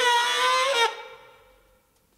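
A single held horn note at one steady pitch, from a live jazz brass ensemble. It stops sharply a little under a second in and rings away in the hall.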